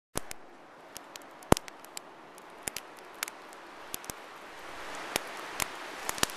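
Wood campfire crackling: irregular sharp pops over a soft steady hiss, with the loudest pop about a second and a half in.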